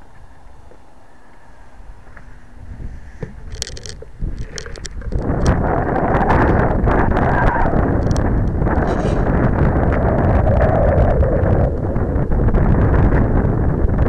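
Wind buffeting the glider's onboard camera microphone as the model is carried, with handling clicks and knocks on the airframe. Faint at first, it jumps to a loud, steady rush about five seconds in.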